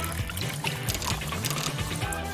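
Drink trickling from a tap set into a hollowed-out watermelon into plastic cups, under steady background music.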